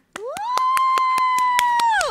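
A woman gives one long, high-pitched cheer that slides up and then holds, over quick hand claps at about six or seven a second, starting just after a moment of silence.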